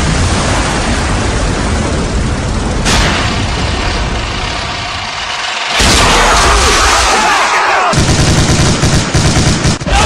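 Battle sound effects: a continuous low rumble of explosions, then about six seconds in a sudden, louder burst of heavy gunfire with machine-gun fire and high whistles that glide up and down through it.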